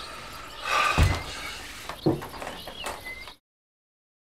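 A dull thump about a second in, a lighter knock about a second later and a couple of faint high chirps, then the sound cuts off suddenly.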